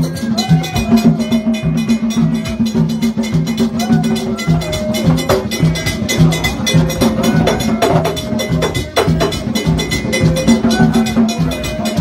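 Haitian Vodou Petro-rite drumming with a fast, steady beat and sharp strokes like a bell or stick, with singing voices over it.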